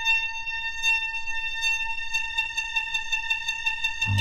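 Opening of a 1970s hard rock record: one high note held steady, with faint regular ticking beneath it.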